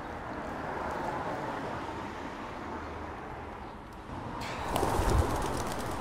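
Pigeons cooing over a steady outdoor hiss, with a louder burst of sharp crackling and low thuds about four and a half seconds in.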